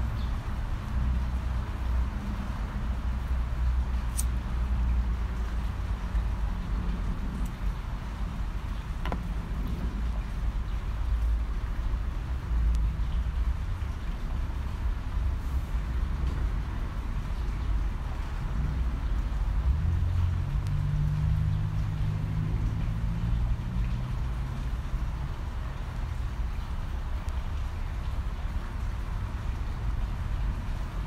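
Steady low outdoor rumble of distant road traffic, with a vehicle engine passing by about twenty seconds in.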